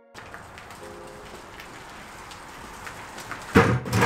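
Steady low hiss, then about three and a half seconds in a loud clank as the steel boat trailer is being worked on by hand.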